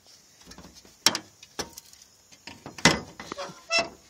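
Rusted sheet-metal body panel being handled and turned over: several sharp knocks and scrapes of metal against metal and the work surface, the loudest about a second in and about three seconds in.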